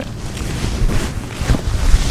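Mercerised cotton saree fabric rustling and sliding as it is lifted and spread out by hand, with low muffled bumps.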